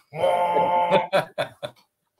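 A single steady horn blast in the manner of a ship's foghorn, held for about a second, played as a sound effect.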